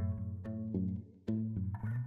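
Background music: a line of plucked low string notes, with a short pause about a second and a quarter in.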